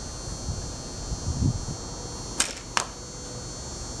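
A handmade hickory-and-bamboo laminated bow shooting a bamboo arrow: a sharp snap as the string is released about two and a half seconds in, then a second sharp crack a fraction of a second later as the arrow strikes the target.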